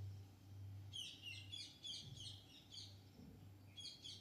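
Faint bird chirping: a quick run of short, high chirps, about four or five a second, lasting about two seconds, then a few more near the end. A faint low steady hum lies underneath.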